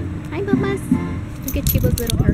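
A brief voice-like sound, then light metallic jingling starting about one and a half seconds in, over a low rumble.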